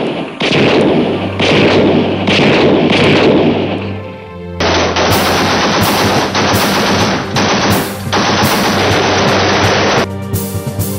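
Automatic gunfire in sustained, repeated bursts, with a low droning music score underneath. About halfway through, the firing turns denser and steadier.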